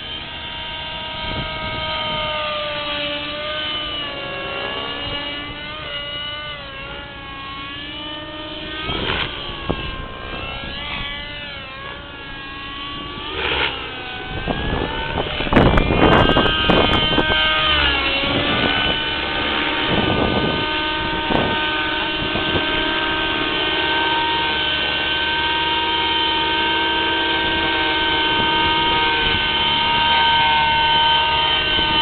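Align T-Rex 600 RC helicopter's nitro engine and rotor running, the pitch sliding up and down as it manoeuvres. The sound is loudest as it passes close about halfway, then settles into a steadier tone as it hovers low.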